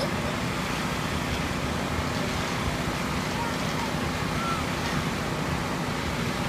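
A steady machine drone with a low rumble and a faint constant hum, even in level throughout, like the motor of an air blower running outdoors.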